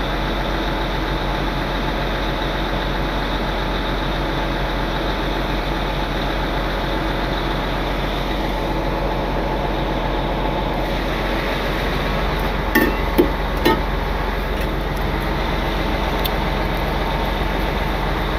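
A heavy truck's diesel engine idling steadily under the even hiss of a handheld propane torch thawing an iced-up air-hose fitting. Three short clicks come about two-thirds of the way through.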